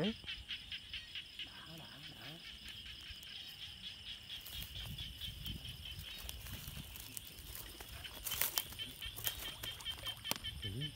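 Night insects chirping in a steady, high, rapidly pulsing chorus over low rumbling handling noise, with a few sharp clicks about eight seconds in.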